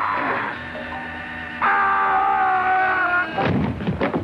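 A sustained dramatic music chord, then a heavy crash about three and a half seconds in as a man falling from a camera crane hits the set floor.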